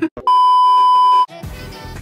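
A loud, steady electronic beep lasting about a second, followed by pop music with a beat.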